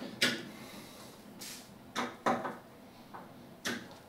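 A handful of short, irregular knocks and clicks from a screwdriver and hands working at the black aluminium frame of a glass terrarium as a corner screw is lightly tightened.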